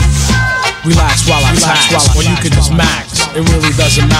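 Old-school 1980s hip-hop music from a DJ mix: a heavy drum-and-bass beat with a vocal over it.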